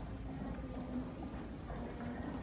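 Footsteps of a person walking, with low rumble from the handheld camera, over a faint steady hum.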